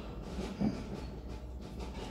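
Low steady rumble with faint ticks and one soft thump about two-thirds of a second in, in a quiet stretch between passages of music.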